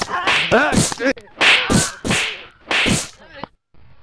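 About four sharp, swishing whip-like hits in quick succession, typical of punch sound effects laid over a beating, dying away shortly before the end.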